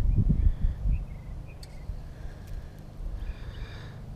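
Wind rumbling on the microphone outdoors, strongest in the first second, with a few faint high chirps.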